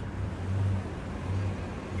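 Low rumble of a road vehicle, typical of city traffic, swelling twice.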